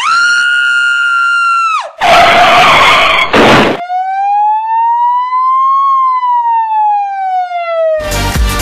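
Siren sound effect: a shrill tone held for about two seconds that then drops away, a loud burst of harsh noise, then one long slow siren wail that rises and falls in pitch.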